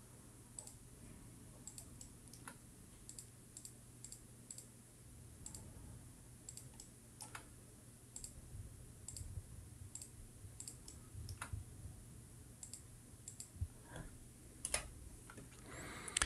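Faint computer mouse clicks at an uneven pace, about two a second, placing the cut points of Blender's knife tool, over a low steady hum.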